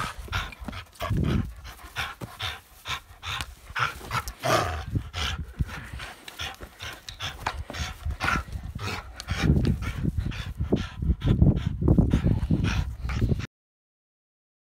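A dog playing tug-of-war with a rubber ring toy: irregular breathing and play noises mixed with scuffling and handling bumps, heavier and rumbling in the last few seconds. The sound cuts off suddenly just before the end.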